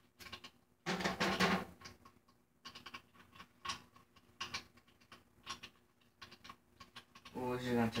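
Scattered small clicks and taps, irregular in timing, from hands working on a snare drum while its heads are being changed.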